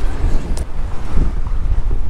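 Wind buffeting the microphone, making a heavy, steady low rumble.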